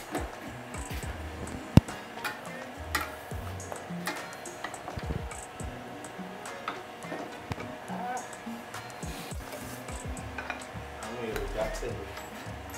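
A spoon clinks and scrapes against a steel pot and a ceramic plate as soup is dished out, with many small knocks and one sharp clink about two seconds in. Music plays underneath.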